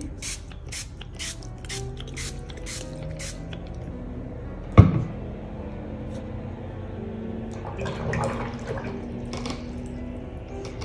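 Fine-mist spray bottle squirted about nine times in quick succession, roughly three sprays a second, misting water onto watercolour paper to wet it. A single sharp knock follows about five seconds in.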